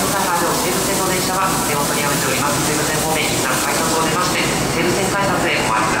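A station public-address announcement over the steady noise of a busy underground platform, with a train standing at the platform.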